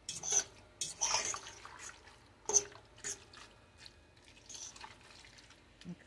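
Creamy bow-tie pasta being stirred in a stainless steel pot: irregular wet squelching, with a few sharp clinks of the utensil against the pot, the loudest about two and a half seconds in.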